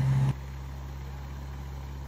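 Sling TSi's Rotax 915 iS four-cylinder aircraft engine idling with its propeller turning, heard as a steady low hum on its first engine run.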